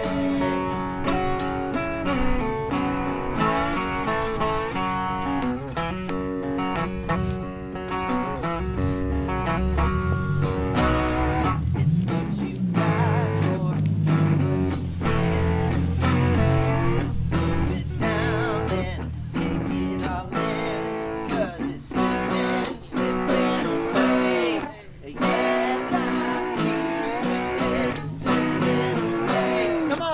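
A Mule resonator guitar played in a bluesy instrumental, picked notes and chords with bent, sliding notes in the second half, while a tambourine keeps a steady beat.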